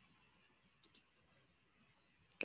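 Two quick computer mouse clicks, about a tenth of a second apart, about a second in, against near silence.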